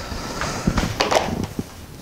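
A folding cardboard game board being turned over and handled: a rustling scrape with a few light knocks about halfway through.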